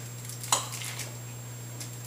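Metal pastry cutter working butter into a crumble topping in a glass bowl: soft squishing, with one sharp clink of the tines against the glass about half a second in.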